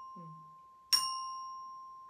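A Samick children's xylophone: one bar struck with a mallet and left ringing, then struck again on the same note about a second in, each stroke fading away slowly.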